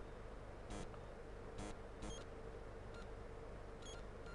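Quiet room tone with a faint steady hum, broken by a few soft short clicks and two tiny high chirps.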